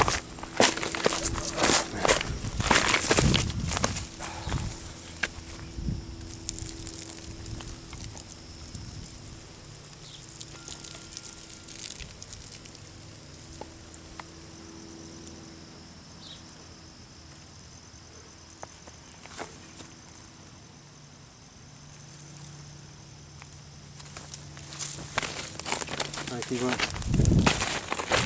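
Footsteps and rustling over brush and gravel, with clicks and knocks from handling the camera. These are busy for the first few seconds, then sparse and quieter, and pick up again near the end.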